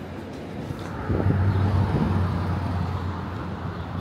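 Road traffic: a motor vehicle's engine running close by, a steady low drone over road noise that starts suddenly about a second in.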